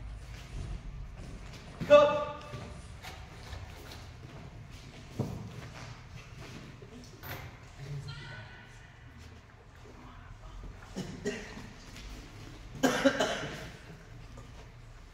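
A taekwondo practitioner's loud kihap shouts during Taegeuk 8 poomsae, one about two seconds in and a longer one near the end, with short sharp snaps of the uniform and steps on the foam mat in between.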